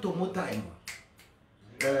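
Three quick, sharp clicks close together, about a second in, in a pause between a man's speech.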